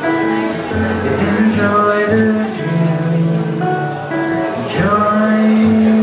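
Live solo acoustic guitar with a man singing over it, drawn-out held notes in the second half: the last bars of a song.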